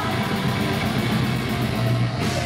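Live heavy rock band playing loud: electric guitar and drum kit going steadily.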